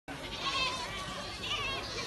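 Goats bleating twice, about half a second in and again near the end, over the chatter of a crowd.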